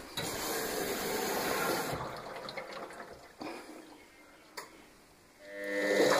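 Washing machine taking in water with a steady rushing sound that fades over the first few seconds. Near the end its motor starts turning the drum with a rising hum; the drum is running on freshly replaced bearings.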